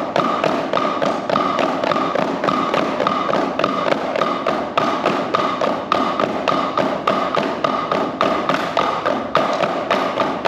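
Five children playing drumsticks on drum practice pads together, working through a double-stroke rudiment (two strokes per hand). The result is a fast, even stream of taps with regular accents.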